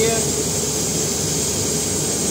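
Steady rushing hiss of a plasma-spray booth's equipment running with the process gases flowing, before the plasma torch is lit.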